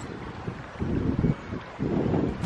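Wind buffeting the microphone in uneven gusts, a low rumbling rush.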